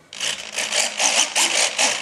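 Small metal-gear RC servos (Turnigy MG 14g) working the ailerons back and forth, a buzzing whir in quick bursts of about four or five a second.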